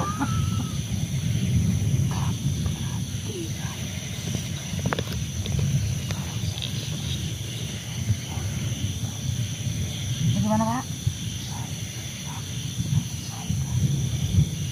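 Low, rough guttural grunting and heavy breathing from a man, running throughout, with one short rising vocal sound about ten and a half seconds in.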